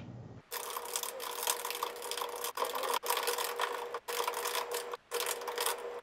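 Fast typing on a computer keyboard: a dense, continuous run of keystrokes with a faint steady tone under it, broken by several abrupt cuts.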